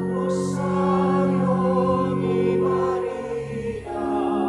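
A church choir singing a slow hymn in long held notes.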